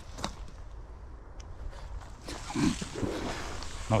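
Footsteps crunching through dry leaf litter toward a fallen camera, over a low wind rumble on the microphone, with a short voice sound about two and a half seconds in.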